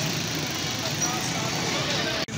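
Busy street ambience: steady traffic noise with faint, indistinct voices of people nearby.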